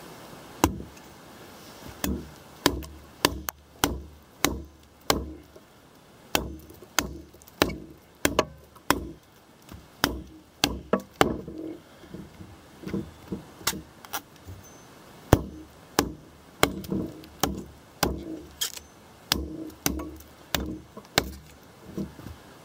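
Ontario RTAK II, a large fixed-blade knife, chopping into a fallen log: a run of sharp wooden thwacks, about one and a half strikes a second, with short pauses between runs.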